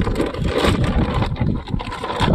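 A plastic fish bag crinkling and rustling as it is handled in a tub of water, with water sloshing and low rumbling handling noise on the microphone.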